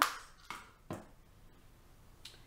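A compact plastic eyebrow palette clicking shut, followed by two lighter taps as makeup items are set down.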